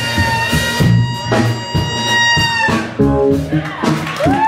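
Live jazz-funk band with a saxophone solo: the saxophone holds one long high note over drums and electric bass, letting it go about two-thirds of the way through, after which the bass line and drums carry on alone.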